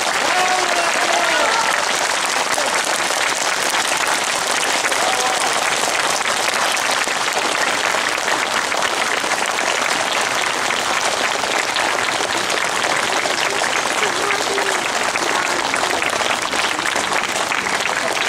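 Audience applauding steadily, with a few voices heard briefly over the clapping.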